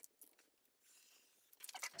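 Near silence with a few faint ticks near the start and a brief faint hiss about a second in: a craft knife cutting a sheet of 80gsm photocopier paper along a steel ruler on a cutting mat.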